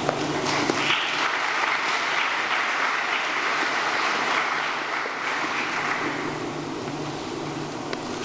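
Audience applause, swelling about a second in and dying away by about six seconds in.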